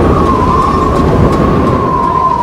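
Storm wind howling: a steady, slightly wavering whistle over a dense low roar.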